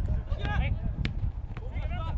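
Outdoor football match sound: short calls from voices over a steady low rumble, with one sharp knock about a second in.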